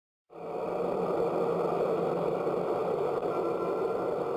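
A steady, even running noise like a motor, starting about a third of a second in after a moment of complete silence and holding level.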